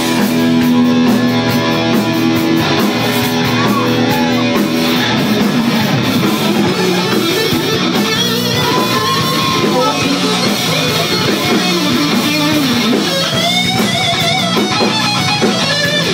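Live rock band playing loudly, led by an electric guitar: a held chord for the first few seconds, then a lead line of bent, wavering notes.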